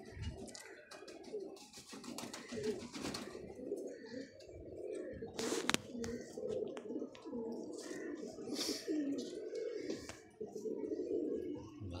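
Several domestic pigeons cooing continuously, overlapping low coos. A single sharp click a little past the middle.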